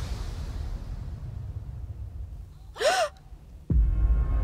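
A woman's short, sharp gasp of surprise about three seconds in, over a low rumbling music bed. A deep music hit comes in suddenly just before the end.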